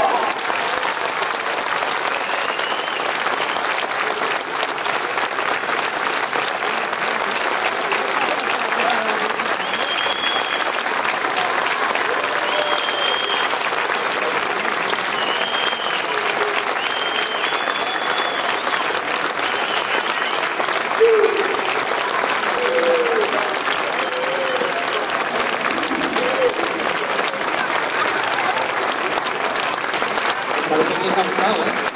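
Audience applauding steadily at the end of a stage performance, with a few short high cheers or whistles in the middle and some shouting voices later on.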